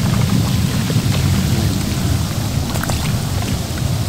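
Hot tub jets running: steady churning, bubbling water with a low rumble.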